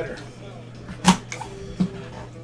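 A cardboard trading card box being handled and opened by a gloved hand: one sharp knock about halfway through and a lighter one near the end.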